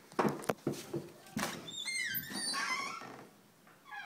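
A door being handled and opened, with sharp latch clicks and knocks, followed by about a second of a high, wavering squeak.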